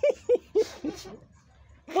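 A young man laughing: a quick run of short, high-pitched laughs in the first second, fading into a brief pause.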